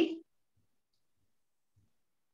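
A man's voice finishing a spoken question at the very start, then near silence while he waits for an answer.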